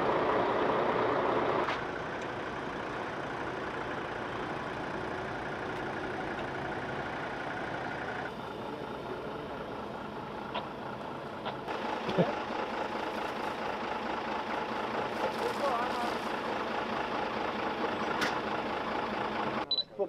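Steady running noise of fire engines' diesel engines, with faint voices now and then. The sound shifts abruptly twice as the shot changes.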